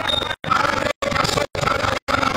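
Portable PA loudspeaker putting out loud, heavily distorted, rasping sound. The audio cuts out completely for a moment about twice a second.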